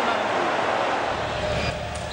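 Steady crowd noise from a football stadium's spectators.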